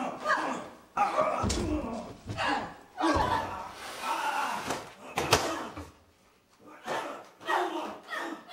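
Heavy thuds and one sharp slam, the loudest about five seconds in, from stunt performers grappling and passing a prop box during a staged fight, among voices.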